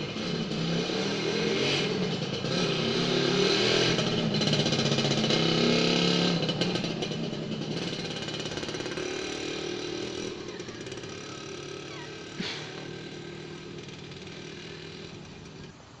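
Small motorcycle engine running as the bike rides by, growing louder over the first few seconds and then slowly fading away. A single short knock about twelve seconds in.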